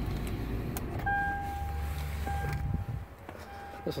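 Inside the cabin of a 2018 Toyota 4Runner at its push-button start: a low rumble, with a steady electronic tone from about a second in that sounds in long stretches with short breaks.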